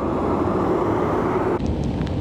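Outdoor ambience dominated by a steady low rumble of a motor vehicle, with a faint hum that rises slightly. The sound drops away abruptly about one and a half seconds in.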